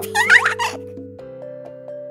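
Cartoon squeak sound effect, a quick run of wavering, bending high pitches lasting under a second, over steady background music.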